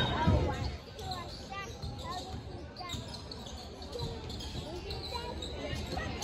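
Basketball bouncing on a hardwood gym floor during play, with scattered voices of players and spectators in the large, echoing gym; louder at the very start, then steady and fainter.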